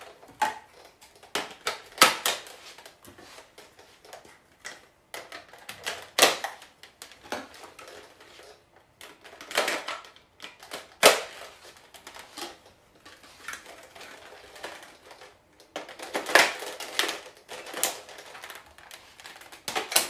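Hard plastic parts of a toy Nerf blaster clicking and clattering as attachments are fitted on and handled, in scattered bursts of clicks with a few louder knocks.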